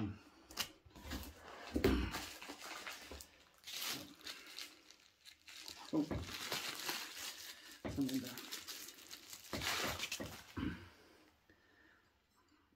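Plastic bubble wrap crinkling and tearing in irregular handfuls as a glass beer bottle is unwrapped from it.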